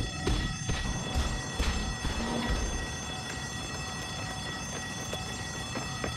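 Outdoor traffic-area ambience: a low rumble under several steady high-pitched tones, with a few light knocks in the first three seconds.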